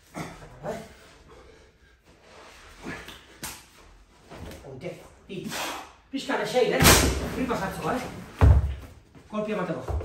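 A heavy stone being lifted from a rubber gym floor to a lifter's shoulder, with a sharp knock about seven seconds in and two heavy, deep thumps towards the end as the stone comes back down onto the floor.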